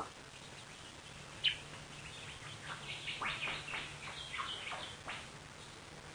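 Birds chirping: a scattering of short, falling chirps that begins about a second and a half in and thickens in the middle, over a faint steady low hum.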